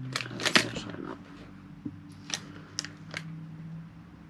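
Handling of a small bag of wax melts: a burst of crinkling and rustling in the first second, then a handful of small sharp clicks.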